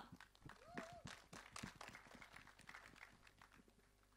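Near silence: faint, scattered clicks and taps that die away to dead silence about three and a half seconds in.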